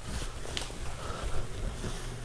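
Faint handling noise with a couple of light clicks as hands reconnect a bicycle dropper post's control cable, over a low steady hum.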